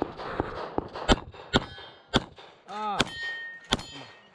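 A string of 9mm pistol shots from a CZ Shadow 2, irregularly spaced about half a second to a second apart. Steel targets clang and ring when hit, with one plate ringing on for most of a second after a shot near the end.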